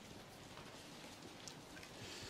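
Near silence: faint steady room hiss, with one small click about one and a half seconds in.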